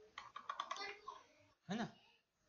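Computer keyboard typing: a quick run of light keystrokes over about a second, then a short vocal murmur near the end.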